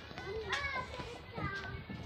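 Children's voices, talking and calling indistinctly, in short bursts.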